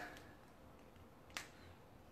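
Near silence: room tone, broken once by a single short, sharp click about a second and a half in.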